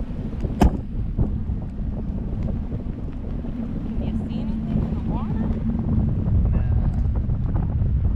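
Wind buffeting the microphone of a camera riding on a parasail high above the sea, a steady low rumble, with one sharp click about half a second in.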